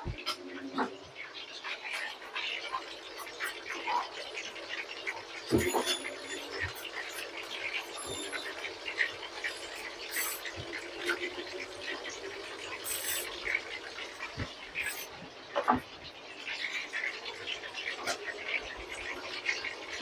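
Metal ladle and fine mesh strainer clinking and tapping against a stainless-steel soup pot while foam is skimmed off simmering sour soup, a few light clinks scattered over a low steady background.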